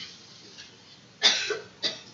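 A person coughing twice, a little over a second in, the two coughs about half a second apart and the first the louder.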